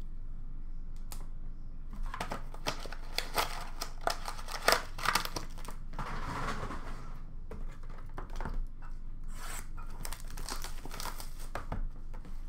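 Trading-card packaging handled by hand: a run of crinkling, crackling and clicking, with a stretch of rustling and tearing in the middle.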